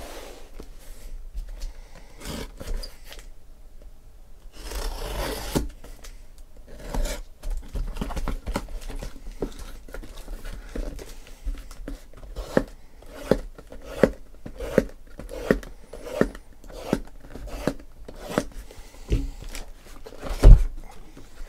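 Cardboard shipping case being opened and handled: rubbing and scraping of cardboard with a longer tearing rasp about five seconds in, then a run of short light knocks, roughly one every 0.7 seconds, as sealed hobby boxes are lifted out and set down one after another.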